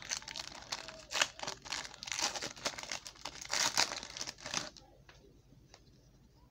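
Wrapper of a 2018 Panini Contenders basketball card pack being torn open and crinkled by hand, in a run of sharp, irregular crackles that stops about five seconds in.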